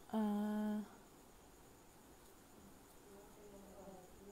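A woman's voice holding one steady, hummed note for under a second at the start, followed by faint, quiet murmuring near the end.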